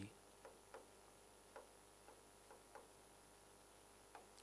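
Faint, irregular ticks of a pen tapping and touching a writing screen as a word is handwritten, about six in four seconds, over near silence.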